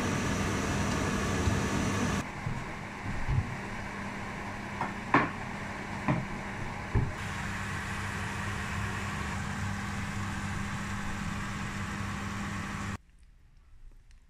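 Steady mechanical hum with a hiss under it in a kitchen while a pan of pepper and tomato sauce cooks on a gas hob, with a few short clicks and knocks of a plastic spatula against the frying pan about a third to halfway through. The hum stops suddenly about a second before the end.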